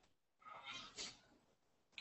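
Near silence: room tone, with one faint, brief sound about halfway through.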